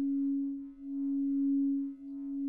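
Background music: a single sustained low drone that fades and swells back in the middle and dips again near the end.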